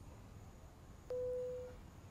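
Single electronic beep from a smartphone, one steady tone of under a second starting with a faint click about a second in: the tone of a video call being hung up.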